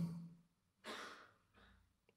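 A single sigh-like exhale close to the microphone, about a second in, just after a spoken phrase trails off.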